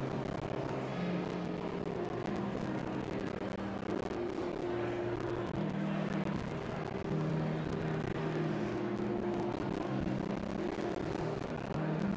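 Church organ playing slow held chords that change every second or two, over steady room noise.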